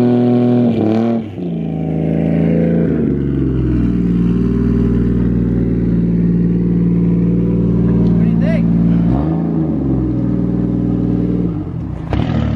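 Nissan S13 drift car's 1JZ inline-six engine running and being revved: a couple of throttle blips early, a steady raised-rpm hum for several seconds as the car rolls out, then another short dip and blip near the end.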